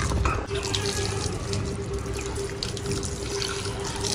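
Water running steadily from a tap into a small plant pot and spilling over onto the concrete floor.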